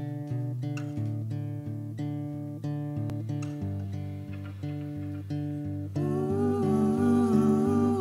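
Short instrumental intro theme: a steady run of plucked acoustic guitar notes, joined about six seconds in by long, slightly wavering held notes from a second instrument.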